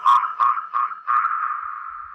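Dub-style delay echoes of a shouted vocal, thinned to a narrow mid-pitched band, repeating about three times a second and fading. About a second in they blur into a steady held tone. No beat under them.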